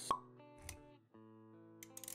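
Sound effects and music of an animated logo intro: a sharp pop just after the start, a short low thud, then held synth-like music notes with a few clicks near the end.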